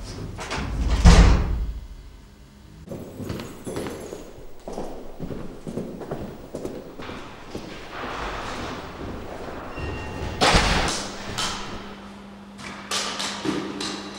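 A door thuds shut about a second in, followed by a run of footsteps in a large, echoing hall. Near the end there is another loud bang, like a door, and a steady low hum begins.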